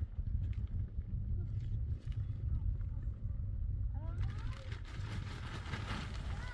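Wind buffeting the microphone with a steady low rumble. From about four seconds in, a plastic sheet rustles and crackles as it is handled, with a few short high chirps.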